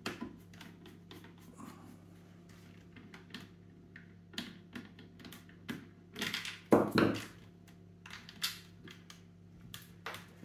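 Small clicks and taps of a screwdriver turning out screws and handling the metal and plastic parts of an airsoft rifle's receiver, with a louder knock and rattle about two-thirds of the way through.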